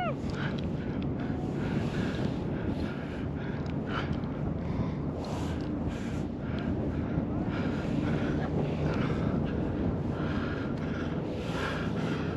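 Steady wind noise on a helmet-camera microphone during a descent under a round military parachute canopy.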